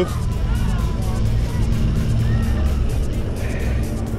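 A Vekoma roller coaster train climbing its chain lift hill, with a steady low rumble from the lift and rapid, evenly spaced clicking of the anti-rollback ratchet, several clicks a second.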